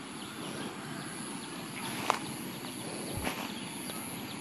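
Quiet outdoor background noise with a sharp click about two seconds in and a dull low thump about a second later.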